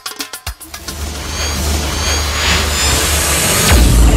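Live party music with a fast beat stops about half a second in, replaced by a cinematic riser sound effect: a swelling whoosh over a low rumble that builds steadily and ends in a deep boom near the end, the start of a video logo sting.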